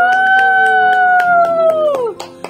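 A voice holds one long, high cheering note that falls away at the end, over hands clapping.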